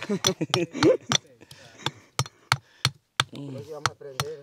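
A small hammer striking a stone over and over, chipping out a hole in the rock: a steady run of sharp taps, about three a second.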